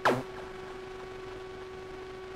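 Quiet background hiss with a faint steady hum, after the last word of speech trails off right at the start.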